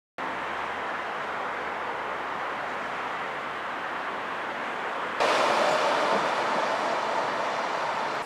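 Steady outdoor background noise, an even rush of distant road traffic. About five seconds in it steps up louder and then slowly eases off.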